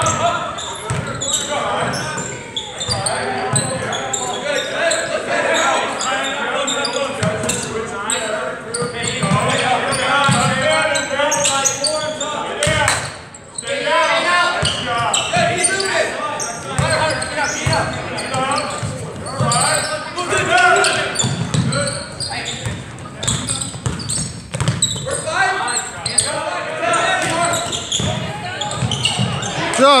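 Spectators' voices and shouts in a large gym, with a basketball bouncing on the hardwood court now and then during live play.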